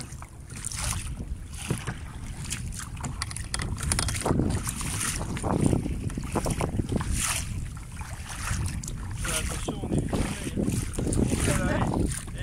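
Wind buffeting the microphone, with the repeated splash of double-bladed kayak paddle strokes in choppy sea water.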